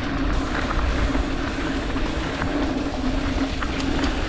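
Mountain bike rolling fast down a packed-dirt trail: wind rushing over the handlebar camera's microphone and the tyres running on dirt, with a few light clicks and rattles from the bike.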